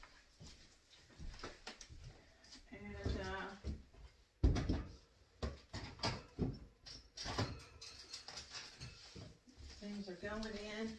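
Canned goods and packages being set onto pantry shelves: a series of knocks and clinks, with one heavier thud about four and a half seconds in.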